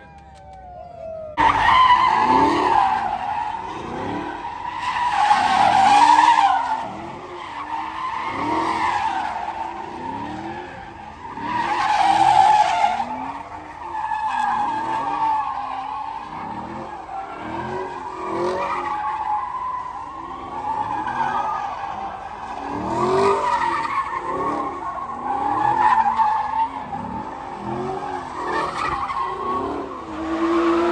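Cars doing donuts: engines revved up and down over and over while the spinning rear tires screech steadily, with louder surges as the cars whip around.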